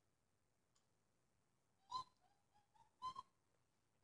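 TV cartoon audio, mostly near silence, with two short, faint, high-pitched voice-like calls about two and three seconds in.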